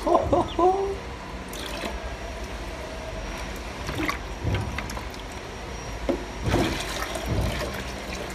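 Water sloshing and trickling in a plastic tub as a child scoops and pours it with a plastic pitcher. A few louder splashes and knocks come about two, four and seven seconds in.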